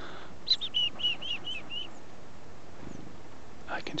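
Black-capped chickadee giving its chick-a-dee call about half a second in: one higher opening note, then a quick run of about seven short, evenly spaced dee notes.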